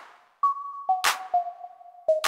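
An electronic beat playing back at 100 BPM: a synth lead holds a simple two-note line with a hand clap on the backbeat about every 1.2 seconds, with no bass or kick drum yet.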